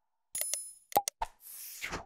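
Sound effects of an animated subscribe reminder: a quick run of click-like pops, one with a short bell ding about a third of a second in, the sharpest click about a second in, then a whoosh toward the end.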